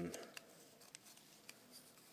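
Faint, scattered small clicks of plastic model-kit parts handled in the fingers as the painted pilot figures are seated in the cockpit.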